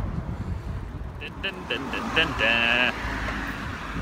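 Outdoor riding noise: wind on the phone's microphone and traffic on the adjacent road, a steady low rumble. A person's voice calls out briefly in the middle.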